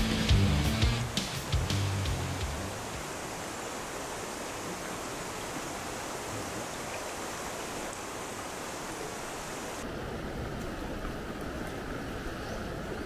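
Guitar music fades out over the first couple of seconds, leaving the steady rush of a mountain river running over rocks and riffles. About ten seconds in, the water sound changes abruptly to a duller, softer rush of a smaller rocky stream.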